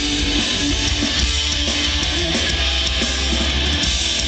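A rock band playing live: strummed guitars over a heavy, steady low end, with no vocals in this passage.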